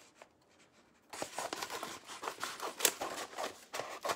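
Decor transfer sheets crinkling and scraping as they are handled, a quick irregular run of small rustles that starts about a second in.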